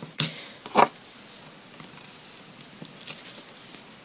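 A plastic nail-stamping scraper pulled across a metal stamping plate: two short scrapes in the first second, then only faint small ticks of handling.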